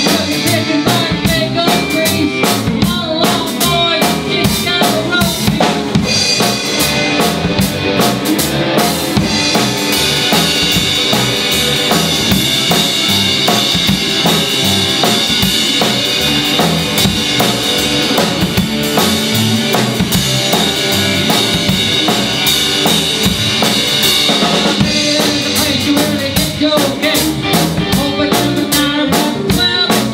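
Live rock-and-roll band playing an instrumental passage: a drum kit keeping a steady beat under electric guitars, with sustained high notes held through the middle of the passage.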